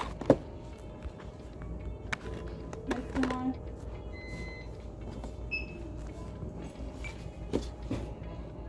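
Cardboard toy boxes set down on a checkout counter: a sharp knock just after the start and lighter knocks about three seconds in and near the end. Two short beeps come in the middle, over background music and low voices.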